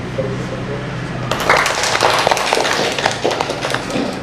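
A small group of people clapping their hands in applause, starting about a second in after a man's closing words.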